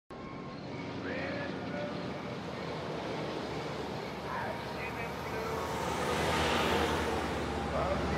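Cars driving along a road, a steady rush of tyre and engine noise that grows louder in the second half as vehicles draw nearer.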